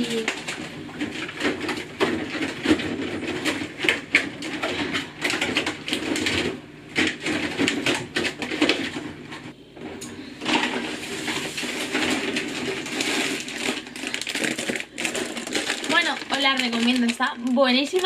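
An indistinct voice without clear words, over frequent knocks and rustling from items being put into a refrigerator.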